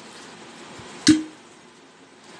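A single sharp pop about a second in, with a short low ring after it: a glass stopper being pulled from a glass decanter bottle.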